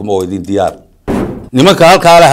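A man talking to camera, with a brief pause and a short noisy burst about a second in before he carries on.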